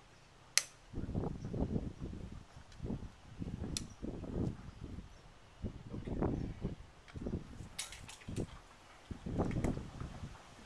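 Hoof nippers snapping through a cow's overgrown hoof toe: a sharp snap about half a second in, another near four seconds, and a quick cluster of snaps near the end. Irregular low rustling and thumping runs underneath.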